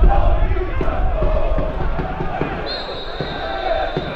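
Football stadium crowd noise and shouting, then a referee's whistle blows once about two and a half seconds in, a high steady tone held for about a second that stops play.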